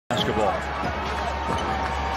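Basketball dribbled on a hardwood arena court, a few separate bounces over a steady crowd hum, with a commentator speaking.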